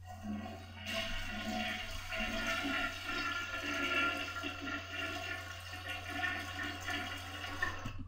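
A toilet flushing: a steady rush of water that grows fuller about a second in and runs on for several seconds.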